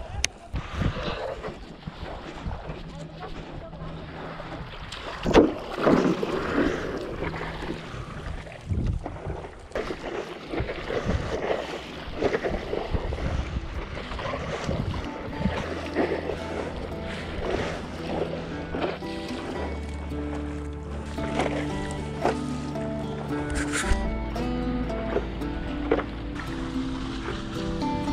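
Paddle strokes splashing in the water, with wind on the microphone. Background music with steady sustained notes comes in about halfway through and takes over.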